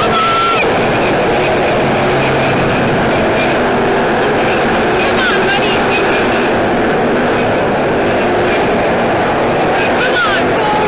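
A pack of dirt-track stock cars racing together, their engines making a loud, steady, dense din with no single car standing out.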